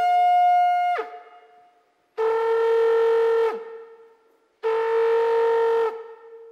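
Shofar blasts: a held note that slides down and stops about a second in, then two more long blasts of about a second and a half each, the first of them ending with a drop in pitch.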